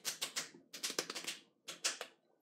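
Rapid, light slaps of fists striking open palms, two people counting out a round of rock-paper-scissors. The taps come in three quick clusters, the last just two strokes near the end.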